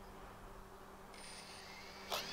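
Faint low hum; about a second in, a faint hiss and a thin high whine come in and rise slowly in pitch: the UpAir One quadcopter's motors spinning up on the ground.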